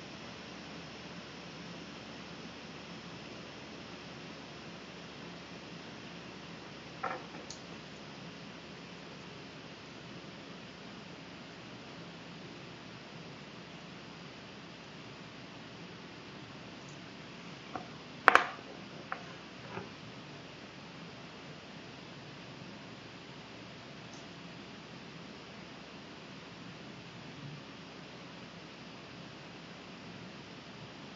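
Steady low hiss of room tone with a few scattered light clicks and taps from hands handling jumper wires on a breadboard. The sharpest click comes about eighteen seconds in, followed by two smaller ones.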